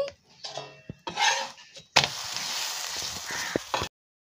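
Stuffed aloo paratha sizzling in oil on a hot tawa as a spatula presses it, after a few light clinks of spoon or spatula on the pan. The sizzle starts suddenly about halfway through and cuts off just before the end.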